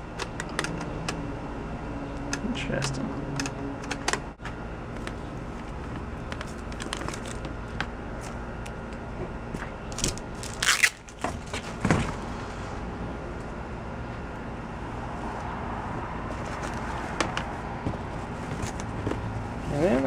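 Hands rummaging through clothing and belts in a plastic storage tote: fabric rustling with scattered light clicks and knocks, and a couple of sharper clatters about ten to twelve seconds in, over a steady low background hum.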